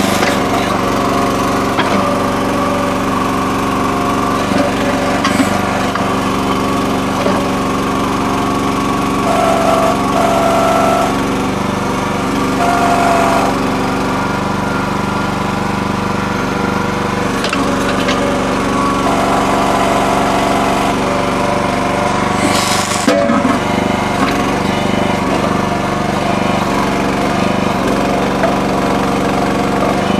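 Small gas engine of a towable mini backhoe running steadily while it digs. A higher whine comes in briefly a few times as the boom and bucket hydraulics are worked, with a few sharp knocks.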